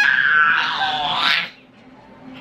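A baby's high-pitched squeal, held for about a second and a half and then stopping suddenly.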